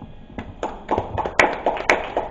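Scattered audience clapping that starts about half a second in and grows denser, with a few sharper knocks as the handheld microphone is passed and set down on the table.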